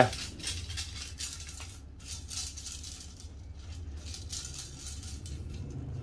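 Faint handling noise of a carbon telescopic fishing rod: hands rubbing and sliding along the blank, with light scattered rattles and clicks, over a low steady hum.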